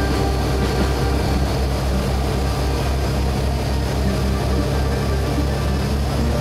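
Boat engine running with a steady low drone, under the rushing hiss of the churning wake.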